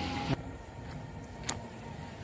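Faint outdoor background noise with a low steady rumble; the hiss drops away abruptly about a third of a second in, and a single sharp click sounds about halfway through.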